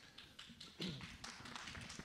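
Faint scattered taps and rustles of a handheld microphone being picked up and handled.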